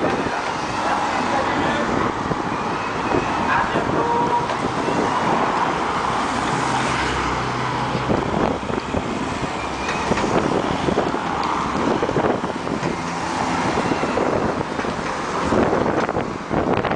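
Convoy cars and a motorcycle driving past close by, with engine and tyre noise and the motorcycle going by about halfway through, over chatter from roadside spectators.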